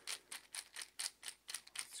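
A small precision screwdriver turning a chrome screw into a guitar tremolo's metal lock plate, giving a quick, even run of light clicks, about four or five a second.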